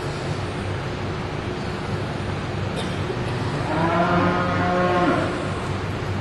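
A heifer mooing once, one call of about a second and a half starting about four seconds in, over a steady low background hum.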